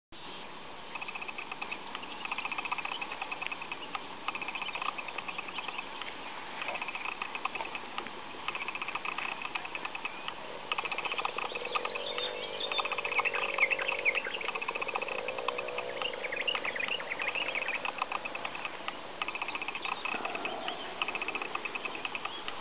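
Wild animal calls in dry forest: a short high trill repeated every second or two, with a lower, wavering call joining in about halfway through.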